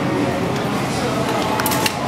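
Steady background hum of voices, with a few short sharp clicks a little over a second and a half in.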